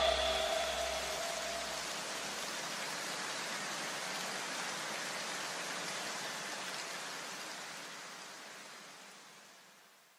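An even hiss that slowly fades out to complete silence about nine seconds in, with the last notes of the preceding music ringing away in the first couple of seconds.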